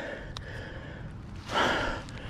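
A person takes a short, loud breath about one and a half seconds in, over faint background noise, with a small click shortly before.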